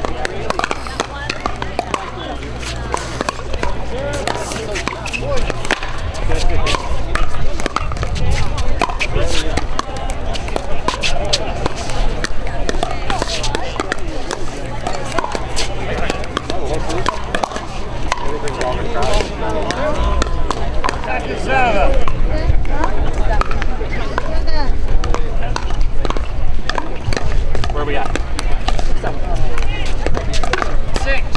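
Pickleball paddles striking a plastic pickleball, sharp pops repeated at irregular intervals through rallies on this and nearby courts, over a background of voices.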